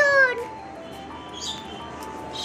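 A single short, high-pitched call right at the start, rising then falling, over soft background music with steady held tones and two faint high chirps.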